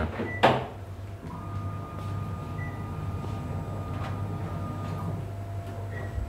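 Espresso Book Machine's motors and mechanism running as it transfers the glue-bound book block down to the trimming section: a steady hum with a thin whine from about one second in until about five seconds in, and a few light mechanical clicks.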